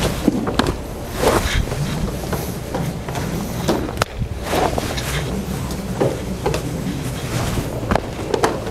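A group of people swinging short training ropes in circles around their bodies: scattered irregular swishes and soft taps, over a steady low hum.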